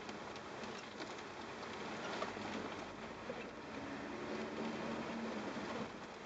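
Cabin noise of a 4x4 driving on a rough dirt track: a steady rumble of tyres and engine with many small rattles and ticks from gravel and the bodywork. A faint engine hum rises slightly about halfway through.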